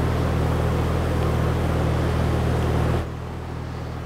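A steady low mechanical hum, like an idling engine or running machine, that drops away suddenly about three seconds in, leaving a fainter background hum.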